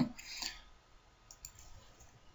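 A few faint, short clicks from computer input as a subtraction is entered into an on-screen calculator.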